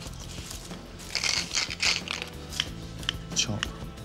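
Kitchen scissors snipping through spring onions: short, crisp snips about twice a second in the second half, after a few brief rustling scrapes. Background music runs underneath.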